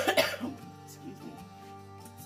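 A woman coughs into her hand, clearing her throat, in the first half second, over soft background music.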